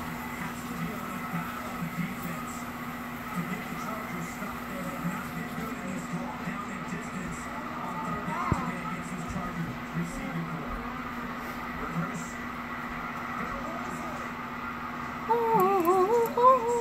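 Background television sound with faint speech and music over a steady low hum. Near the end a loud, wavering high whine starts.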